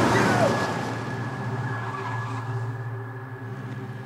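A car drives past and away, its engine and tyre noise fading steadily. A few shouts from its occupants are heard at the start.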